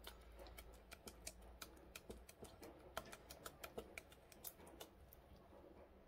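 Wooden spoon stirring thick quinoa porridge in a stainless steel Instant Pot inner pot: faint, quick, irregular clicks as the spoon knocks against the pot, stopping near the end.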